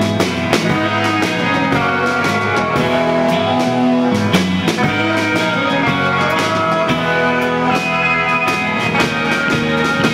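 Live rock band playing: electric guitars and electric bass over a drum kit, at full, steady loudness.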